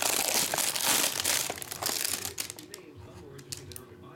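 Plastic shrink-wrap crinkling and tearing as it is stripped off a trading card box. The crackle is loudest for about the first two seconds, then dies down to a few light clicks and rustles.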